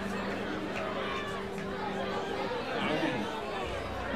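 Audience chatter in a live-music room between songs, with a faint steady tone from the stage that stops about halfway through.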